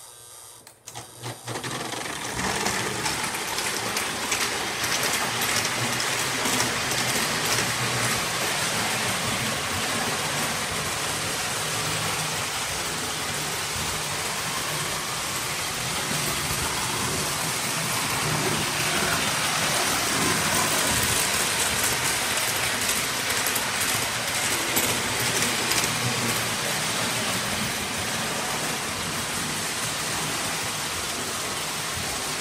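Postwar Lionel 736 Berkshire O-gauge model steam locomotives running on three-rail track: a steady mechanical rumble and rapid clatter of motors and wheels. It starts with a few clicks and comes up to full level about two seconds in.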